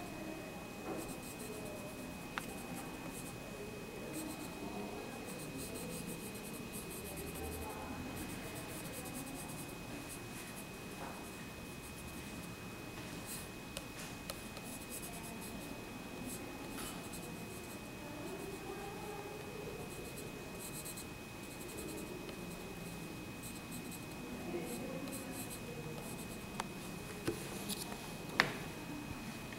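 Graphite pencil drawing across a sheet of paper laid on an inked stone slab, a continuous scratchy scribbling of strokes, pressed firmly so the ink beneath transfers to the paper in a drawn monotype.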